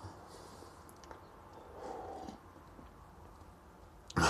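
Faint sounds of a man drinking beer from a glass mug: soft sips and swallows, a little louder about two seconds in.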